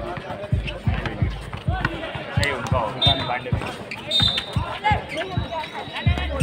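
A basketball being dribbled on an outdoor concrete court, about two to three bounces a second, with players' voices calling out over it.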